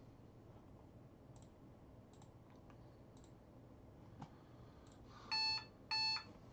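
A few faint clicks of computer use over a quiet room background, then near the end two short electronic beeps, each about half a second long and clearly louder than anything else.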